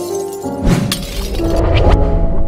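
Logo-intro music with a shattering sound effect as the logo's ball breaks apart, followed by deep booming hits from about half a second in.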